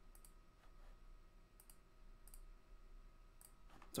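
Near silence with a few faint, sharp clicks of a computer mouse spread through, as the link on the slide is being clicked.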